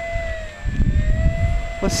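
Electric motor and propeller of a 1100 mm Spitfire RC model taxiing on grass: a steady whine that dips slightly about half a second in and then comes back up, over a low rumble.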